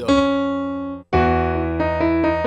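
Digital piano in a piano voice playing two held chords over a low bass note: the first rings about a second and is cut off short, and the second comes straight after with its upper notes moving. The harmony is a C-sharp major chord in first inversion, its bass on F natural under a C-sharp melody note.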